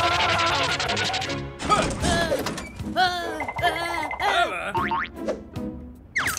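Cartoon soundtrack music with comic sound effects. It opens with a fast, rattling trill for about a second and a half, then turns into a series of short sounds that bend up and down in pitch.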